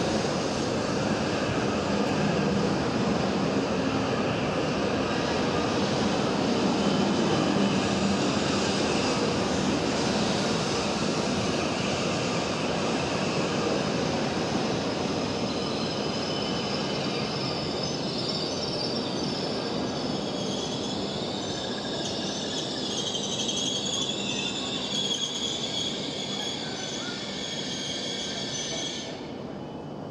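E7 series Shinkansen train rolling slowly past into the station platform, a steady rumble of wheels on rail. Past the middle, high squealing tones join in as it slows. The sound drops away sharply near the end as the last car goes by.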